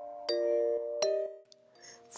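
Background music of struck chime-like notes: two notes about a second apart, each ringing and fading, then the music cuts off shortly after halfway, leaving a brief silence.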